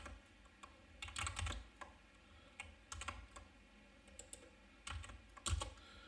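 Computer keyboard keystrokes, faint, typed in short irregular runs with pauses between them.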